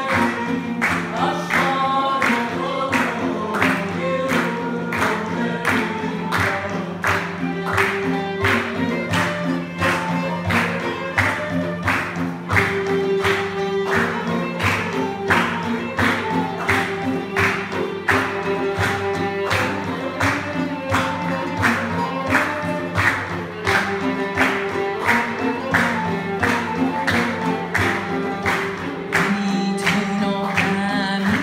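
Live ensemble music: a woman singing to violin, oud and flute, with hand drums keeping a steady beat.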